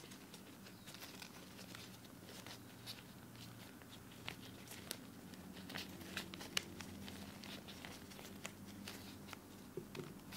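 Faint, scattered clicks and knocks of wooden snake-cube blocks being twisted against each other by latex-gloved hands, with the crinkle of the gloves; the sharpest click comes a little past halfway. A steady low hum runs beneath.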